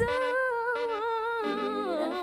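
Background music: a single voice holds one long sung note with almost no accompaniment, wavering slightly, then slides down near the end.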